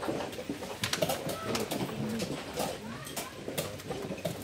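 Wooden chess pieces being set down on the board and chess clock buttons being pressed during fast blitz play, a string of sharp clicks and taps.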